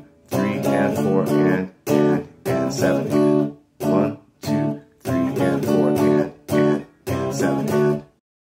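Clean electric guitar playing a riff in 7/8 time as short, choppy chord stabs separated by brief silences.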